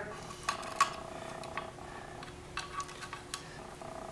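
Faint, scattered metallic clicks and clinks as a long machine screw and small steel trigger parts of a Daisy 499B BB gun are handled and fitted into the trigger housing, the sharpest two about half a second and a second in.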